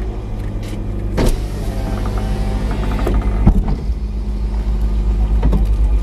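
Car engine idling steadily, heard from inside the cabin, with two sharp knocks about one and three and a half seconds in.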